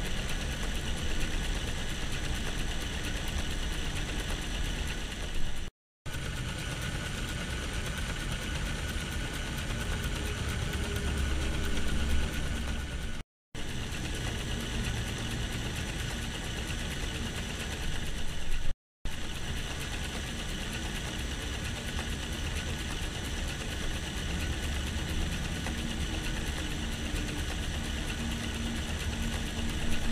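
Small electric motor of the ROKR LKA01 wooden steam traction engine model running steadily, driving its gear train. The sound drops out abruptly three times for a split second.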